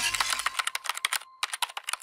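Glitch sound effect of an animated logo sting: a rapid, irregular run of sharp digital clicks and ticks that thins out and grows quieter toward the end, with a faint thin tone behind it.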